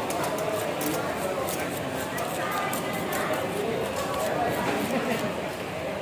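Hand-held plastic fish scaler scraping the scales off a large whole fish on a wooden chopping block, in quick repeated strokes, with voices in the background.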